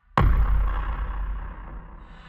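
A sudden heavy boom of an explosion sound effect, its deep rumble dying away over about a second and a half, with a thin high ringing tone fading above it.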